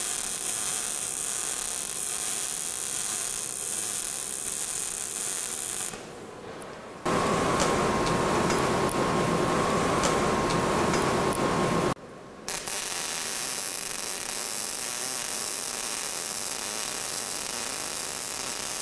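MIG welding arc running steadily with an even crackle and hiss as a fill pass goes into a horizontal V-groove. About six seconds in it drops away, then a louder stretch of noise with a steady mid-pitched tone lasts about five seconds before the steady crackle returns.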